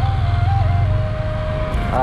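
Slow flute melody of a few long held notes, playing over the steady low rumble of a motorcycle engine and wind while riding.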